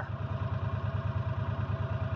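An engine idling steadily, a fast even low throb of about fourteen beats a second with a faint steady hum above it.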